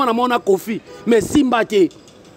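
A man's voice speaking forcefully in a rhythmic, almost chanted delivery, breaking off just before the end.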